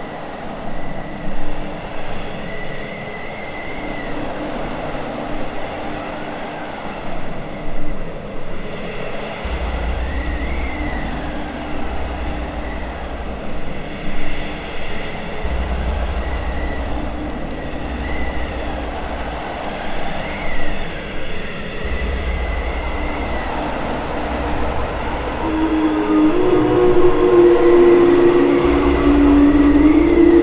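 Opening of a dark industrial track: a rumbling, train-like noise bed with short squealing glides over it. A deep bass drone comes in about ten seconds in and pulses in long blocks, and a bright sustained synth chord enters near the end.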